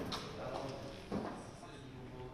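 Press-room ambience: a low murmur of voices with two short, sharp knocks, one at the very start and another about a second in.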